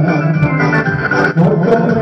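Music with sustained organ-like keyboard tones, dipping briefly about one and a half seconds in.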